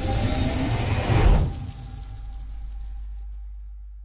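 Logo-sting sound effect: a rising whoosh building to a shattering hit about a second in, then a low boom that slowly fades away.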